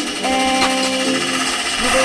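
Pneumatic rivet gun hammering a rivet into aluminium sheet, a rapid steady rattle, heard under background music with held notes.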